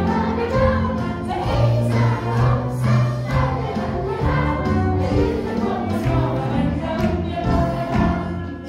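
A small live band plays a Christmas song with several voices singing over it. Bass notes and accompaniment run steadily underneath.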